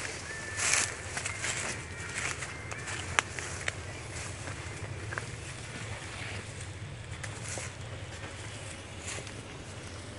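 Footsteps and rustling through dry fallen leaves and brush: irregular crackles and swishes, busiest in the first few seconds, over a steady low hum.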